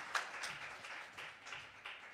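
A small audience clapping, with separate claps audible, thinning out and fading away.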